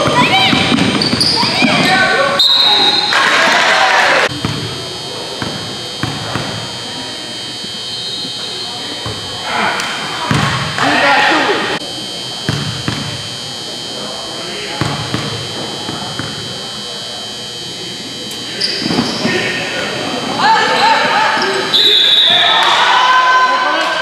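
A basketball bouncing on a hardwood gym floor during a game, with voices shouting and echoing around the hall.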